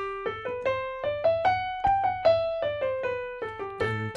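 Digital piano playing a G major scale one octave up and back down in a gallop rhythm (a note, a rest, then two quick notes on each beat). The notes climb to the top about two seconds in and come back down to the starting G near the end.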